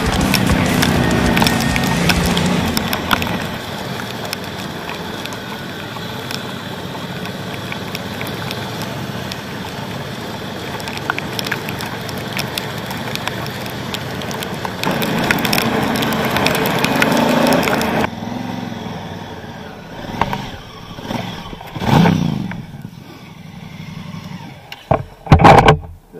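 Honda Africa Twin Adventure Sports parallel-twin motorcycle ridden at speed, its engine buried under heavy wind noise on the bike-mounted microphone. After a sudden change about two-thirds through, the engine comes in short swells, one of them a falling rev. Two very loud knocks come near the end.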